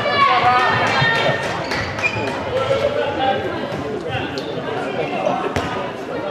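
Handball play in a sports hall: players' voices calling out over repeated sharp knocks of a handball bouncing on the court floor, echoing in the hall.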